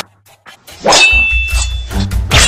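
A sudden, sharp metallic clang that keeps ringing, the sound effect of a hammer blow, coming about a second in after a short near-silent gap. Low bass music comes back in beneath it.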